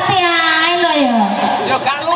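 A person's voice holds one long drawn-out note that slides down in pitch, over crowd chatter.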